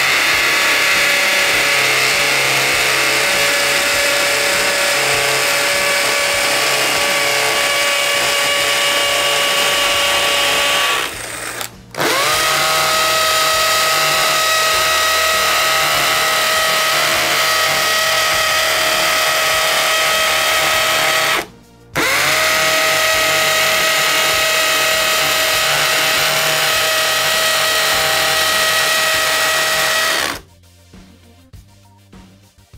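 DeWalt 20V cordless hammer drills hammer-drilling 3/8-inch holes into a concrete block, three timed runs back to back: each spins up with a rising whine, holds a steady pitch over the hammering noise, and stops suddenly as the bit breaks through. The first run, a DCD996 on a 5Ah battery, lasts about eleven and a half seconds at a lower pitch; the next two, a DCD999 on a 6Ah FlexVolt and then an 8Ah battery, run at a higher pitch and finish faster, in about nine and a half and eight seconds.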